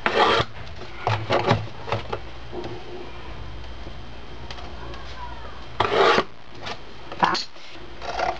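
Metal compass point drawn along a ruler, scoring the paperboard of a milk carton: several short scraping strokes, with a pause in the middle and another longer stroke about six seconds in.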